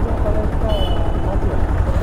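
Motorcycle engine idling with a steady low rumble, and faint voices over it.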